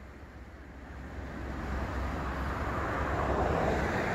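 A vehicle passing by. Its noise swells over about two seconds and then holds, over a steady low rumble.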